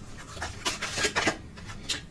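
Tarot cards being handled, with a string of short, soft rubbing and sliding sounds of card against card.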